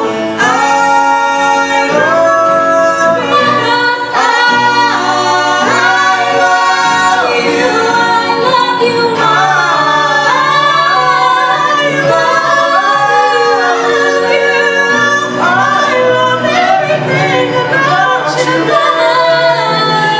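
Three voices, two women and a man, singing a Broadway song in harmony into handheld microphones, with long held notes.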